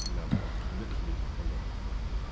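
Steady low outdoor rumble with faint, indistinct voices, and a brief low sound about a third of a second in.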